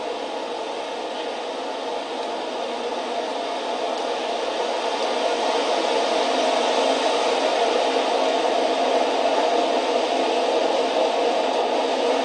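Steady hiss-like noise from a television's speaker playing back an old camcorder tape, growing slowly louder through the stretch.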